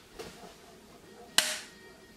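A single sharp clack about halfway through, as the lid of a small black box is snapped shut.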